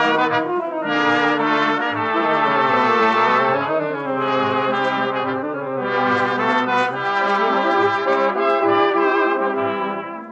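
Dance orchestra's instrumental break on a 1940 Columbia 78 rpm record, with the brass section playing the melody in sustained notes over chords and no vocal.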